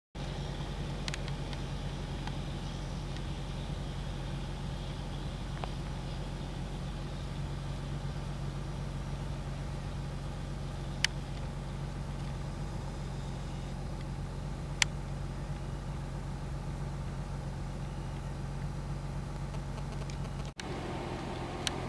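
A vehicle engine idling, a steady low hum. Two sharp clicks come in the middle, about four seconds apart.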